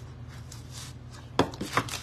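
Handling of a black paint pen on a wooden craft table: a sharp knock about one and a half seconds in, followed by two lighter clicks, over a low steady hum.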